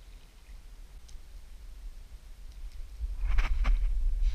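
Bare feet stepping into soft, marshy mud at the water's edge: a few quick squelching, splashing steps a little past three seconds in, over a low rumble. The feet are sinking into the mud.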